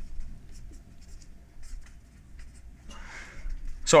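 Dry-erase marker writing on a whiteboard: a run of short, light strokes, with a softer rustle about three seconds in.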